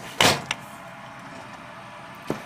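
Aluminium injection-mold plates being slid and pulled apart by hand: one short scrape of metal on metal about a quarter second in, then a light click.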